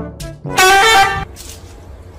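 A loud, steady horn honk lasting under a second, starting about half a second in, after the tail of brass-band music.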